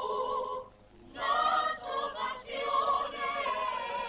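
Choir singing long notes with vibrato on an old 1941 film soundtrack. It breaks off briefly a little under a second in, then comes back.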